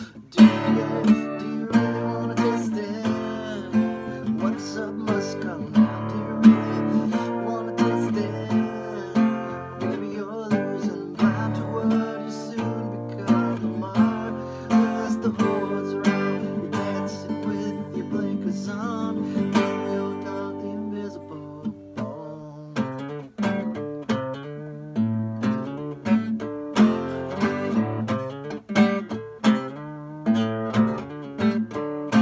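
Acoustic guitar strummed hard in a steady rhythm through an instrumental stretch of the song, starting abruptly after a short pause. The strumming thins out briefly about two-thirds of the way through, then picks up again.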